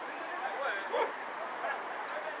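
Short, distant shouts and calls from several voices, the loudest about a second in.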